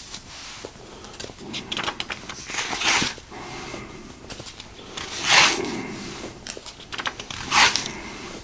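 Pages of an old textbook being turned by hand: three louder paper swishes about three, five and a half and nearly eight seconds in, with lighter rustling and handling between.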